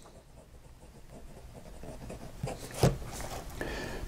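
Bulow fountain pen's steel nib writing cursive on graph paper: a faint scratching of nib on paper that starts about a second in and grows a little, with a few light ticks from the strokes.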